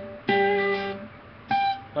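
Acoustic guitar picking two single notes, each ringing out and fading: a G about a quarter second in, then a higher G about a second and a half in, played as octaves of the same note.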